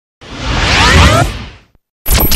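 Whoosh sound effect of a title intro: a rush of noise swells for about a second with rising swept tones inside it, then fades out shortly before the end.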